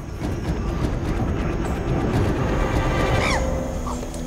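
Field recording of a chimpanzee's charging display: a rough, continuous rumbling and rustling of movement over dry ground and leaves, with one short call that rises and then falls a little past three seconds in.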